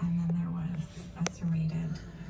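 Quiet whispering voice over a low steady hum that breaks off twice, with one sharp click about a second and a quarter in.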